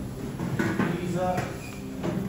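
Indistinct human voices speaking in short phrases, too unclear to make out words.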